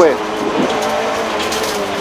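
Rally car engine heard from inside the cabin, holding steady high revs under load over road and tyre noise between the co-driver's pace-note calls.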